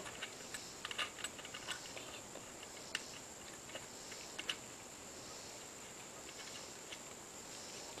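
Faint, scattered metal clicks of a nut being spun by hand onto the GY6 driven-clutch shaft while the clutch spring is held compressed. The clicks come mostly in the first couple of seconds, with a few more later, over a faint steady high hiss.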